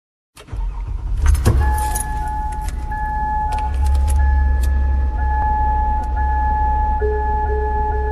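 Car sounds: keys jangling and a few clicks at first, then a car's high warning chime ringing steadily over the low rumble of an idling engine. A second, lower tone starts pulsing near the end.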